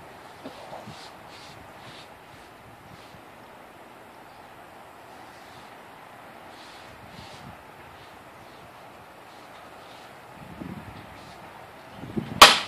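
Faint, steady outdoor background noise with a few soft rustles and shuffles, a little louder near the end.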